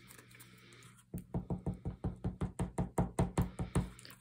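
A nearly empty bottle of liquid multipurpose glue being squeezed against paper, sputtering out air in a fast, even run of pops, about seven a second. It starts about a second in and lasts nearly three seconds, the sign that the bottle is almost out of glue.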